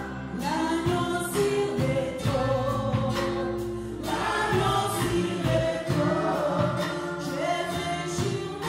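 A gospel worship group singing together through microphones, men's and women's voices in harmony, over backing music with a steady beat.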